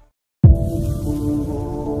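A semi-truck's multi-tone air horn sounding, several steady notes at once, starting abruptly about half a second in and held to the end.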